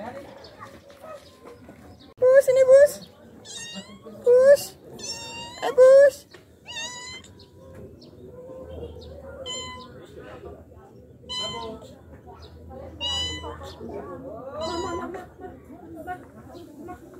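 A tabby cat meowing repeatedly: three loud, bending meows in the first six seconds, then fainter, higher-pitched calls every second or two.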